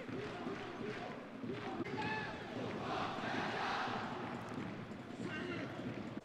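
Football stadium crowd noise: a steady hum of voices from the stands, with a few louder calls standing out about two seconds in and again near the end.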